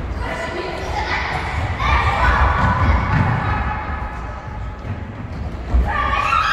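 A football thudding on a wooden sports-hall floor as children kick and play it, with children's raised voices calling out in the echoing hall. The sharpest thud comes near the end.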